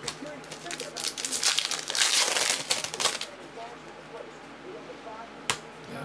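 Foil trading-card pack wrappers crinkling and crackling as they are handled, loudest in the first half. A single sharp click comes near the end.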